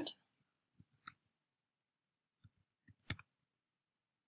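Computer keyboard keystrokes as a password is typed: a few faint, separate clicks at uneven intervals, the loudest a little after three seconds in.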